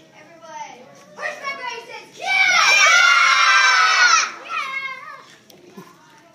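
A group of young children shouting together for about two seconds, many high voices overlapping, with scattered children's voices before and after.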